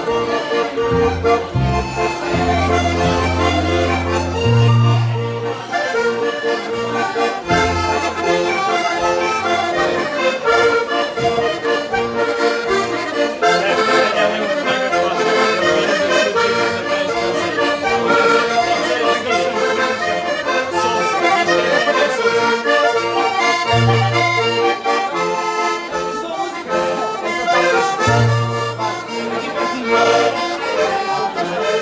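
Three button accordions playing a traditional Portuguese dance tune together, a dense run of sustained reedy melody notes with deep bass notes coming in now and then, heaviest in the first few seconds and again near the end.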